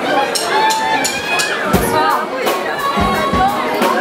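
A live band kicking in, its drum beat starting a little under two seconds in, with crowd voices calling out throughout.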